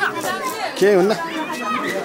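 Speech: a woman talking, with other voices chattering.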